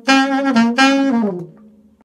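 Saxophone playing a short phrase of a few notes, the last one falling in pitch and dying away about one and a half seconds in.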